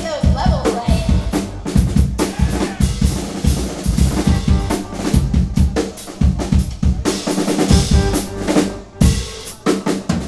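Live indie rock band playing the instrumental opening of a song: a drum kit beats out a steady rhythm on bass drum and snare, with keyboard and synth notes sustained over it.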